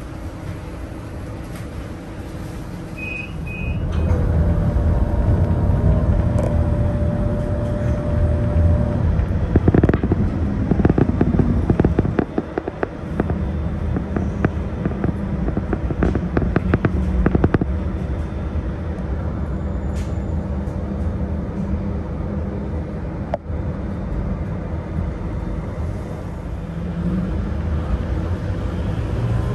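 Town-centre road traffic, with a vehicle engine running close by and getting louder about four seconds in. Two pairs of short high beeps come just before that, and a run of clicks and knocks comes in the middle.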